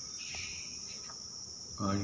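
A steady high-pitched background tone runs unchanged through a pause in speech.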